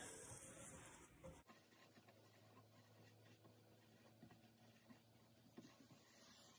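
Near silence, with the faint brushing and a few soft light taps of a paintbrush working epoxy sealer along the underside of a live-edge bark slab, the taps in the second half.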